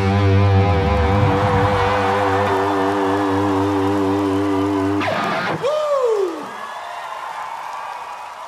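Live rock band holding the final chord of a song, the electric guitar ringing with a wavering vibrato. About five seconds in it cuts off, with a falling pitch swoop, leaving a fainter wash of crowd noise.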